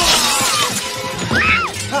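Glass shattering with a loud crash right at the start, trailing off into falling fragments, over the film's music. A woman screams briefly about one and a half seconds in.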